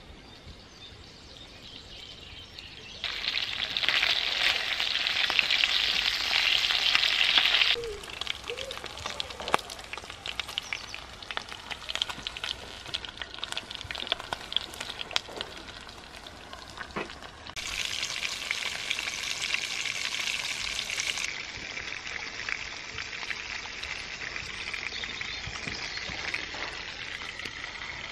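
Sausages sizzling in a frying pan over a small wood-burning bush box stove, a steady hiss with scattered pops. The sizzle jumps louder and softer abruptly several times and is loudest from about three to eight seconds in.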